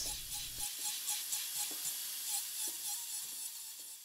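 Dental handpiece running a finishing bur on a composite filling: a steady high hiss of air and spray.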